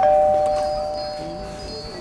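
Door entry chime ringing as the shop door is opened: two bell-like tones struck together, then fading slowly over about two seconds.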